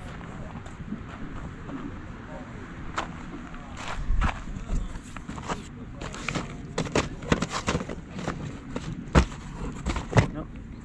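Plastic VHS tape cases clacking and knocking as a hand flips through them in a cardboard box: a run of sharp, irregular clicks from about three seconds in, with the loudest knock near the end.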